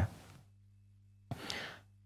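A man's quick intake of breath, a short airy rush about a second and a half in, drawn in a pause of speech just before he goes on talking.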